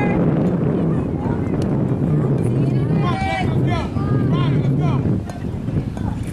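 Wind rumbling on the camera microphone throughout, with several voices calling out at once a few seconds in.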